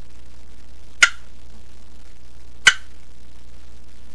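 Turkey clucking: two short, sharp single clucks about a second and a half apart, over a steady low hum.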